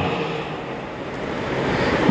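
Pause in a spoken talk: steady hissing room noise with no voice, dipping a little in the middle and rising again.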